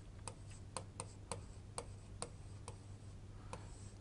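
Faint, irregular ticks of a stylus tapping and writing on a touchscreen display, about ten light clicks spread unevenly.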